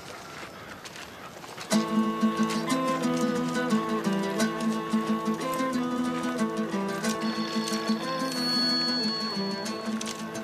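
Background score music comes in about two seconds in: a quickly repeated low note pattern under held higher tones, with a high sustained note joining in the second half.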